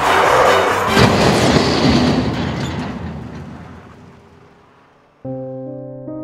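A car crash: a loud impact about a second in, its crashing noise fading away over the next few seconds. Soft, sad piano music comes in near the end.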